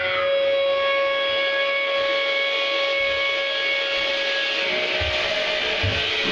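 Live rock band at a quiet point in the music: the drums and bass drop out and a single sustained note is held for about four and a half seconds, with a different note coming in near the end and a few light low hits underneath.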